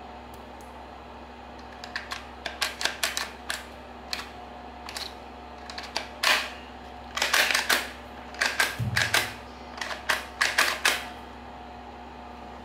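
Handling noise from a hard plastic hot glue gun (3M Polygun AE): irregular clicks and taps of the housing in hand, coming in quick clusters, with one dull thump about nine seconds in.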